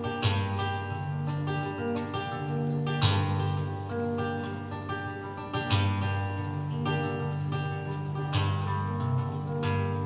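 Acoustic guitar playing slow strummed chords, with a new bass note and a fresh strum roughly every three seconds.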